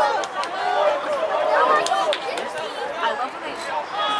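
Several people shouting and talking over one another, the overlapping calls and chatter of players and sideline spectators during a soccer match.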